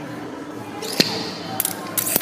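Weight plates being loaded onto a barbell sleeve: a sharp metallic clink with a brief ring about a second in, then a few smaller clicks near the end as a spring clip collar goes on.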